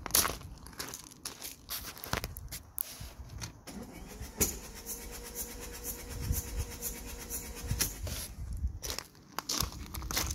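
Footsteps crunching on gravel and the clunk of a car door, then the starter of a Ford S-Max 1.8 TDCi diesel cranking the engine in a steady whine for about three and a half seconds with a compression gauge fitted in place of one glow plug, stopping with a click. More footsteps on gravel follow near the end.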